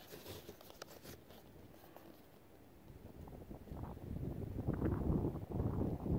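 Faint clicks and rustles of a cardboard box of .22 LR cartridges being turned over in the hands, then, from about halfway, a low rumble of wind on the microphone.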